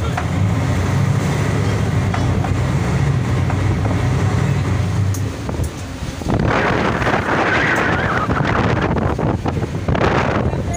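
Boat engine running with a steady low hum over the wash of the sea. About six seconds in, a loud rush of wind on the microphone and breaking waves takes over.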